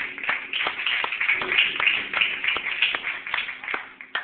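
Congregation clapping, a dense patter of many hands that thins out and stops just before the end.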